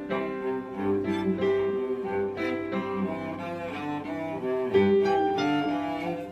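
Cello and piano playing a bourrée together: the cello bows a moving line of notes over the piano accompaniment.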